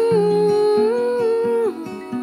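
A woman's voice humming one long wordless note that steps up slightly partway through and stops shortly before the end, over fingerpicked acoustic guitar.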